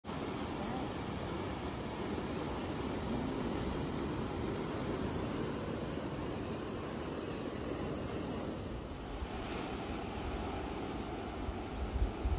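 A steady, high-pitched insect chorus sounds without a break, over a low rush of surf and wind.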